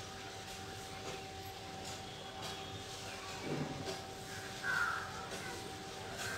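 Soft rustling of hands lifting and working through long wet hair, over a steady low electrical hum. A short louder sound comes about five seconds in.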